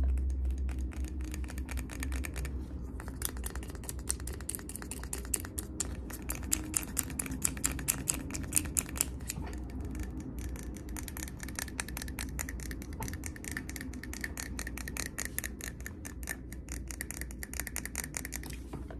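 Fingernails tapping fast and unevenly on a glass jar candle, a rapid stream of sharp clicks that thickens a few seconds in and again near the end, over a steady low hum.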